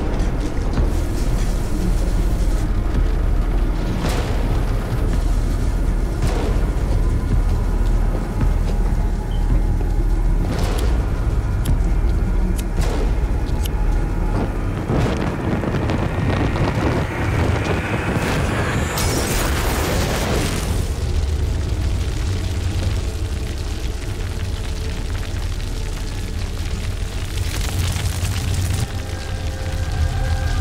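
Horror film soundtrack: dark music over a steady heavy low rumble, with several sharp hits, swelling into a loud rushing whoosh of fire about two-thirds of the way through as a person goes up in flames.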